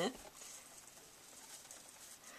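Quiet room tone in a small room, just after a spoken word ends at the very start; no distinct sound stands out.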